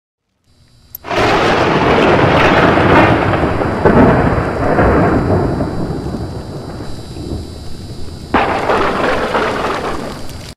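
Thunder sound effect on a logo animation: a small click, then a loud rolling rumble that slowly dies away. A second sudden thunderclap breaks in about eight seconds in.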